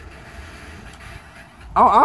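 A pause in talk with only faint, steady background noise, then a man's voice starts near the end.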